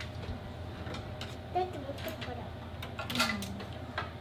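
A few light clicks and clinks of cutlery and utensils being taken out of an open dishwasher drawer, over a steady low hum, with brief bits of voice.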